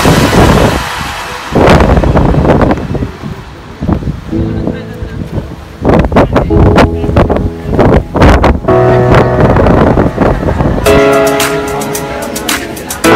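Background music that drops away and comes back, broken up by loud rough gusts of wind on the phone's microphone. The music returns in full near the end.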